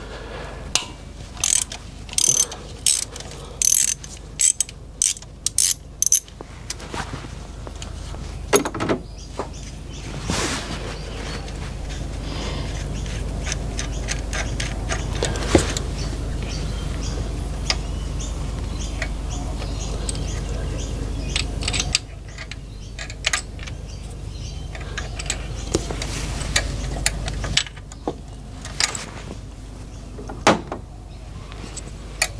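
Ratchet wrench with a 10 mm socket clicking in short bursts about twice a second as the injector clamp bolt is undone. Later there is a steady low rumble with scattered clicks.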